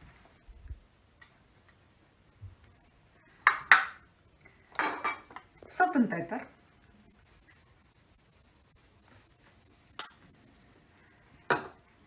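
Scattered sharp knocks and clinks of glass cruets and shakers being handled and set down on a granite countertop, a few at a time with quiet gaps between.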